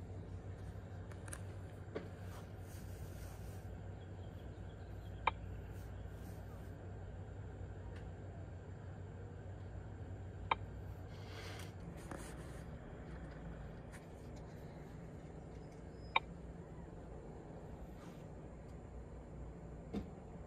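A few sharp, separate taps of a finger on a handheld scan tool's touchscreen, spaced several seconds apart, over a steady low hum.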